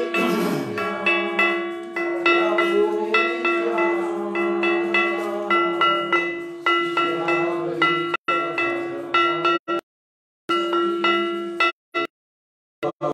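Small brass hand cymbals (karatalas) struck in a steady rhythm, about three strikes a second, each strike ringing, over a steady held drone. Near the end the sound cuts out completely a few times: dropouts in the live stream.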